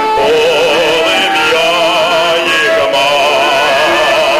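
A male soloist singing a Ukrainian folk song, holding long notes with a steady, even vibrato.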